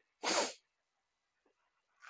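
A person's single brief, sharp burst of breath, about a quarter of a second in.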